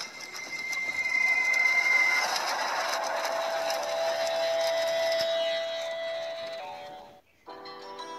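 Logo intro sound effect: a dense wash of noise with a few held tones, swelling and then fading out about seven seconds in. After a brief gap, a song's intro begins with sustained notes.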